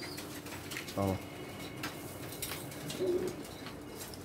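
Domestic pigeons cooing softly, with one low coo about three seconds in.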